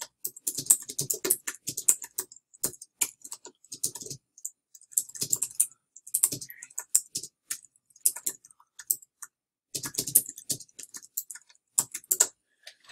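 Fast typing on a computer keyboard: quick runs of key clicks, broken by short pauses every few seconds.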